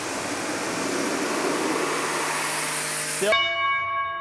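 Ryobi pressure washer spraying through a 40-degree fan nozzle, its water jet hissing steadily onto a cardboard box. The spray cuts off suddenly just after three seconds in.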